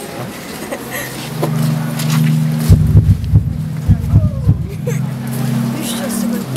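A low steady hum begins about a second in, with indistinct voices and a few dull low knocks in the middle.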